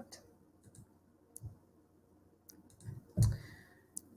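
A few computer mouse clicks, sparse and faint, with one louder click about three seconds in.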